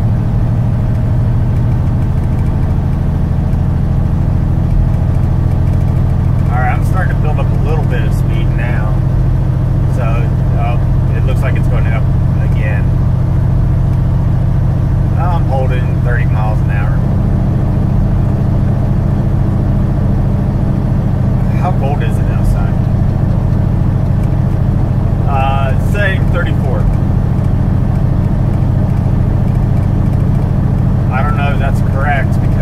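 Semi truck's diesel engine running steadily at highway speed, heard from inside the cab as a loud, even low drone; its note shifts slightly about halfway through.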